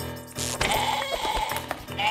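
Cartoon sheep bleating over background music.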